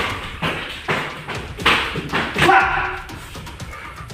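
Quick series of thuds, about two a second, from taekwondo round kicks landing and bare feet striking a concrete floor during a kicking drill. The loudest strikes come just before and around two and a half seconds in, where a short pitched cry also sounds.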